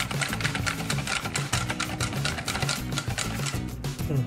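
Wire balloon whisk beating an egg, flour and milk batter in a stainless steel bowl: rapid clicking of the wires against the bowl, several strokes a second, over background music.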